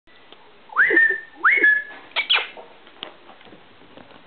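A person whistling twice to call a pet rat, each whistle a quick upward swoop that settles into a short held note. Two short sharp sounds follow soon after.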